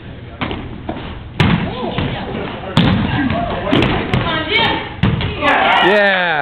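Rubber dodgeballs striking and bouncing on a hard hall floor: two sharp smacks, the first about a second and a half in and the second about a second and a half later, with further lighter hits near the end, amid players' shouts echoing in the large room.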